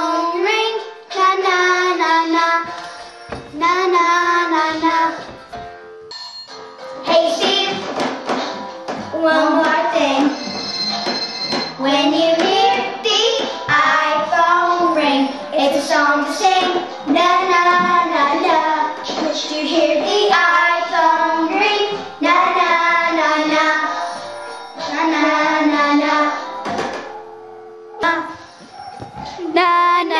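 Two children singing a song together over music, with acoustic guitar and piano accompaniment.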